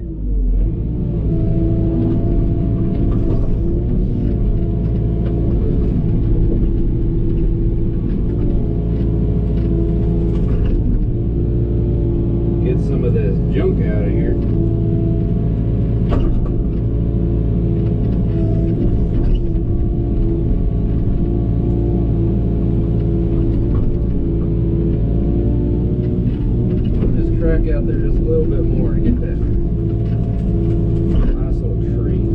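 Excavator's diesel engine running steadily under hydraulic work, heard from inside the cab, with its tone wavering at times. Scattered knocks and cracks come from the bucket working through brush and mud.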